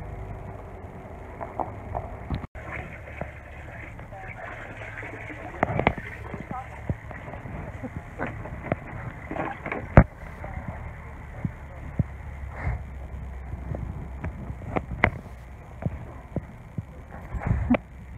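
A horse feeding from a plastic bucket: irregular knocks and clicks as its muzzle works in the bucket, over a low rumble. The loudest knock comes about ten seconds in.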